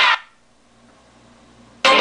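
Music played through a vintage JSL 1511S wall speaker stops shortly after the start. For about a second and a half only a faint low hum is left, then the music comes back abruptly near the end.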